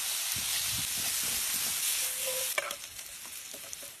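Diced potatoes sizzling in hot oil in a cast-iron skillet as they are stirred, with a few sharp clicks of a utensil against the pan. The sizzle drops lower about two and a half seconds in.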